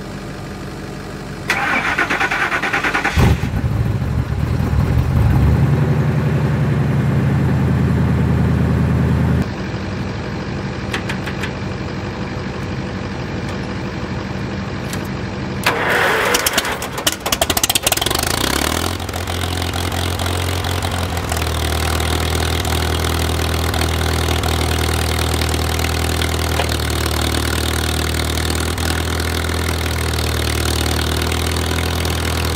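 A pickup truck engine, unstarted for about a month, cranks for a second or two and then catches and runs. Past the middle, an old tractor engine cranks on its starter for a couple of seconds, catches, and settles into a steady idle.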